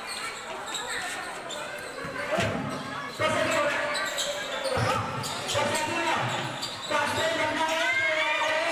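A basketball bouncing on the court during play, with people shouting over it.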